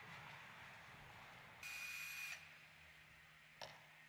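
A cordless drill runs in one short whirring burst of under a second, backing the screws out of the lid of a wooden shipping crate. A single click comes near the end.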